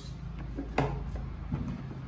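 A red plastic fuel can being handled beside a backpack leaf blower on a concrete floor: a sharp knock a little under a second in and a softer one near the end, over a steady low hum.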